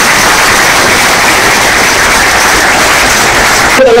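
A large audience applauding steadily. A man's voice starts just at the end.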